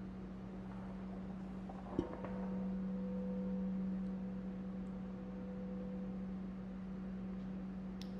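A 24-karat gold-plated crystal singing bowl ringing with one steady low tone. About two seconds in a light knock brings up a higher overtone that swells the sound and then fades away over the next four seconds.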